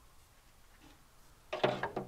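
Log being shifted with a hand tool on a flatbed truck's deck: a sudden short harsh scrape with a ringing note, about one and a half seconds in, lasting about half a second.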